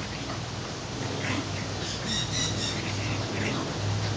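Animal noises of a French bulldog puppy at play with a sulphur-crested cockatoo: short grunting sounds, with a brief run of high chirps a little past halfway, over a steady low hum.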